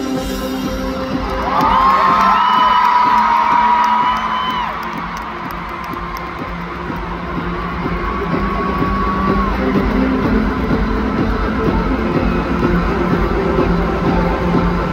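Live stadium music held under a large crowd cheering, with a loud, high held whoop from the crowd about a second and a half in and a shorter one near the middle.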